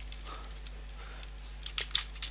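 Computer keyboard being typed on: a few faint key clicks, then a quick run of louder clicks near the end, over a steady low electrical hum.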